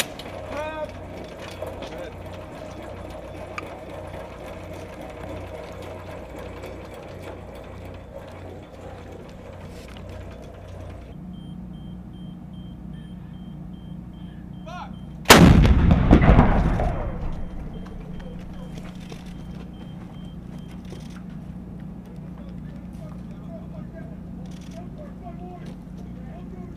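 M777 155 mm towed howitzer firing a single shot about fifteen seconds in: one very loud blast that rumbles away over two to three seconds. Before it, crew voices and steady background noise.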